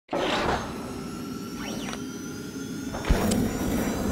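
Intro sting for an animated logo: whooshing swishes with faint gliding tones, then a sharp low hit about three seconds in.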